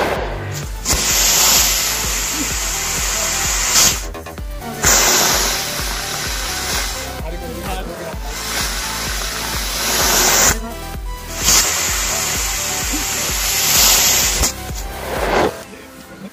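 Firework rocket strapped to a toy train hissing as it burns, heard in four bursts of about three seconds each with short breaks between, over electronic background music.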